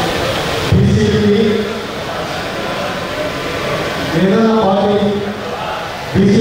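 Slogan chanting amplified over a microphone: a man calls out long, held syllables twice, and a crowd's shouting fills the gaps between the calls.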